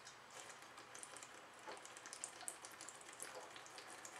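A person drinking beer from a glass bottle: faint gulping with small, irregular liquid ticks and fizzing crackle as the beer runs out of the bottle.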